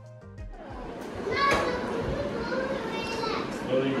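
Background music that stops about half a second in, followed by a young child's high-pitched voice chattering and calling out in a room.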